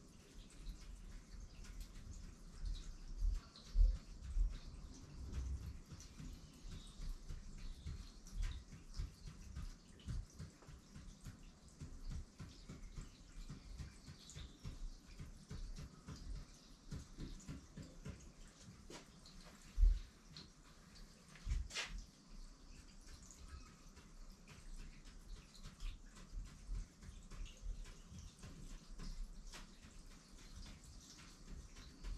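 Ink marker drawing short tally strokes on paper over a hard board: a fast, irregular run of small ticks and scratches with soft low knocks, a few louder knocks and one sharp click.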